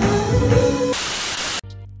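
Background music cuts to a loud burst of TV-style static about a second in, a retro VHS-style video transition effect. The static stops abruptly and a low steady hum follows.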